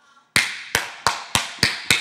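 A man clapping his hands in a steady rhythm: six sharp claps, about three a second, starting a third of a second in, each with a short ringing tail.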